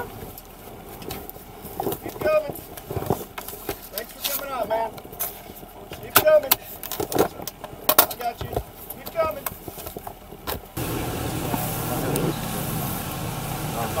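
Brief muffled voices and scattered sharp clicks and knocks in a police vehicle's cab. About eleven seconds in, the sound cuts suddenly to a steady low rumble with hiss.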